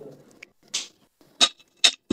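Three short, sharp clinks and scrapes of a silver metal teapot against a tea glass and a metal serving tray as the pouring ends and the pot is set down.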